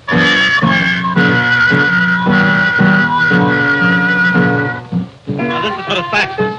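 Trumpet and piano playing a slow jazz melody. The trumpet holds one long high note from about a second in until nearly five seconds, over repeated piano chords. After a brief break, a new phrase starts near the end.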